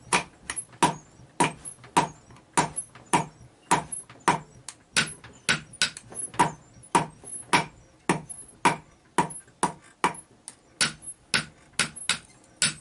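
Hand hammer beating a red-hot axe head on an anvil block in steady forging blows, about two a second, each with a short metallic ring.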